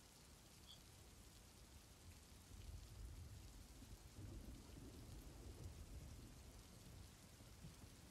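Near silence with faint rain-and-thunder ambience: a low rumble that swells slightly in the middle and fades again.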